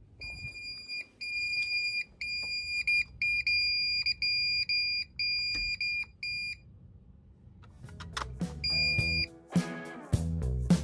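Building security (intruder) alarm sounding its warning as it is being disarmed: a run of long, high, steady beeps at a little more than one a second that stops about two-thirds of the way in. One more single beep follows near the end as music comes in.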